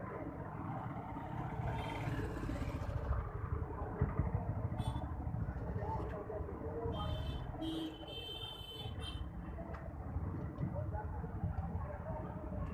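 Busy city street ambience: motor traffic with people's voices in the background, and a few short high-pitched sounds about seven to nine seconds in.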